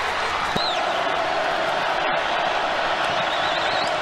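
Stadium crowd noise from a large football crowd, a steady dense roar of many voices.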